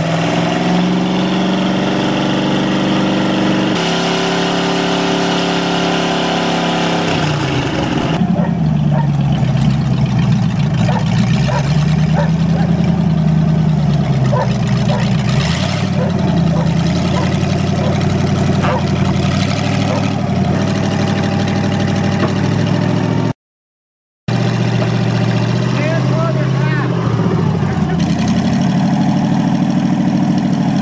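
Engines running and being revved in a string of short clips, their pitch swinging up and down several times. The sound changes abruptly about four and eight seconds in, and drops out for a moment about three-quarters of the way through.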